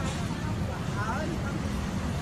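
Outdoor background: a steady low rumble with faint distant voices about a second in.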